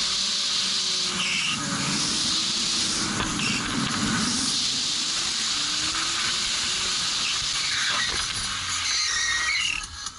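The 2.3-litre four-cylinder engine of an old Volvo 740 revving up and down through a drift, with tyres squealing in short bursts over a steady hiss of wet tyres and wind.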